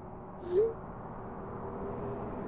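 A single short electronic blip rising in pitch, about half a second in: a phone's text-message alert tone sounding as a message goes through. A faint steady background hum lies under it.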